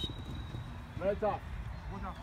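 Outdoor football-pitch ambience: a steady low rumble with one short shout about a second in.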